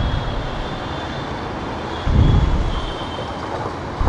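Low, steady rumble of street traffic, swelling briefly about two seconds in.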